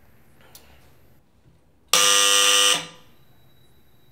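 Electric door buzzer rung once: a single loud, harsh buzz of just under a second that starts and stops abruptly, the sign of someone at the door.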